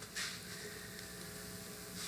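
Room tone in a short pause between spoken sentences: a faint, steady electrical hum with light hiss.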